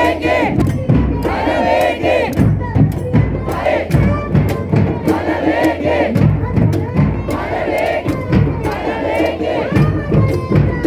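A crowd of street protesters shouting slogans together, loud, in repeated surges of many voices at once.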